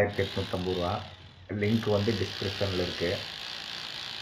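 A voice over the steady buzz of a hammer drill running as it bores into a cement-plastered wall, with a brief lull in the voice about a second in.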